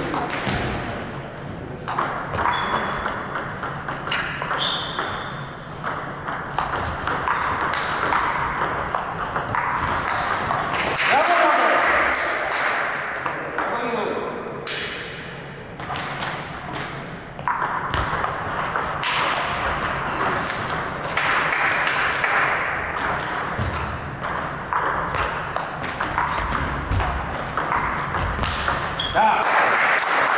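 Table tennis play: a table tennis ball clicking repeatedly off bats and the table in quick exchanges. Voices carry in the background.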